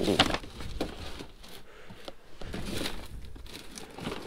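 Cardboard and paper rustling and crumpling in short, irregular bursts as gloved hands rummage through a cardboard box.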